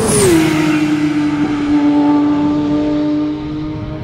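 The 4.0-litre naturally aspirated flat-six of a 2023 Porsche 911 GT3 RS passing close by. Its exhaust note drops in pitch as the car goes past, then holds one steady note and slowly fades as it pulls away.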